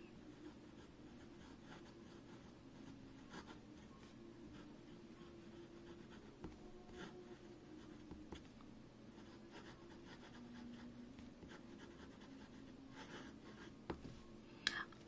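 Faint sound of a broad Jowo fountain-pen nib writing cursive words on Kokuyo paper: short strokes with brief pauses between them. The nib has feedback you can hear, toothy but not scratchy, and it runs on the dry side.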